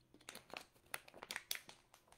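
Faint, irregular crinkling and clicking of handling noise, about a dozen small clicks in two seconds.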